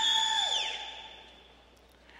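A single high-pitched 'woo' cheer from someone in the audience, held steady for about half a second, then dropping in pitch and dying away.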